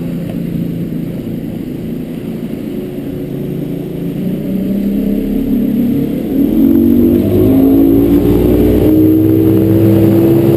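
Evinrude E-Tec 135 high-output two-stroke outboard running the boat under way, then throttled up: from about six seconds in it gets louder and its pitch climbs steadily as the boat accelerates.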